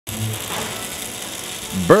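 Electric welding arc crackling and hissing steadily. A man's voice starts right at the end.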